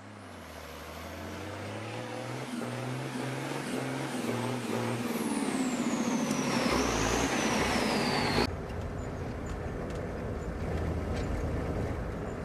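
A deep, engine-like rumble swells steadily for about eight seconds, with a high whine falling in pitch during the second half. It then cuts off abruptly, leaving a quieter steady rumble.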